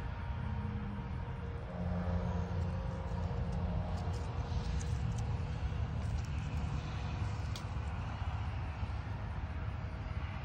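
A steady low engine drone from some distance, its pitch holding, with a few faint clicks of handling.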